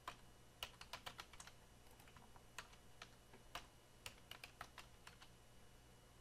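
Faint computer keyboard keystrokes: irregular taps, some in quick runs, as a password is typed.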